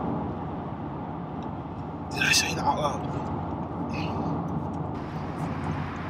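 Steady road and engine noise inside the cabin of a moving Volkswagen Golf R mk7.5, with a couple of brief breaths or mumbles from the driver about two and four seconds in.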